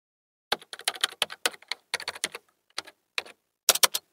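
Computer keyboard typing sound effect: an irregular run of quick key clicks starting about half a second in, with a short pause in the middle and a final quick flurry of clicks near the end.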